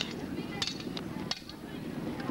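Weapons clashing in a sword-and-shield sparring bout: three sharp strikes over about a second and a half, over a low outdoor background.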